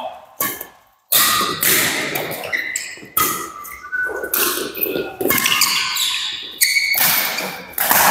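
Doubles badminton rally in an echoing hall: a string of sharp racket hits on the shuttlecock, roughly one every second, including an overhead smash, with short squeaks of court shoes on the floor between them.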